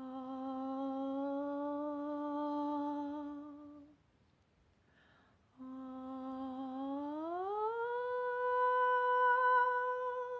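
A woman hums intervals in two long notes. The first is held for about four seconds, drifting slightly upward. After a short pause, the second starts on the same pitch, slides smoothly up about an octave and holds there.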